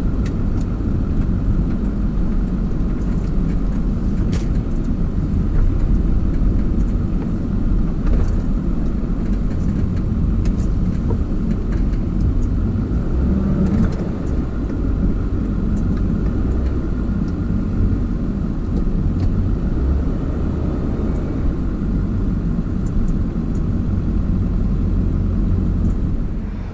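Pickup truck's engine and road noise heard inside the cab while driving: a steady low rumble, with a few faint ticks.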